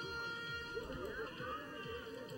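Faint background sound of a small stadium, a low wash with distant, indistinct voices and no distinct event.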